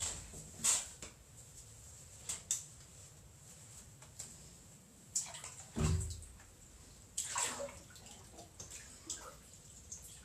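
Water splashing and sloshing in irregular bursts, with a heavier, deeper splash about six seconds in.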